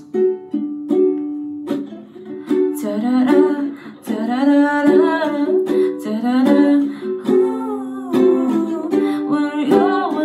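Ukulele strummed in chords, with a young woman singing along, in the echo of a small tiled bathroom.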